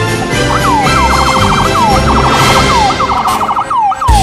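Emergency-vehicle electronic siren sounding from about half a second in, its pitch sweeping up and down, switching between slower wail sweeps and a fast yelp.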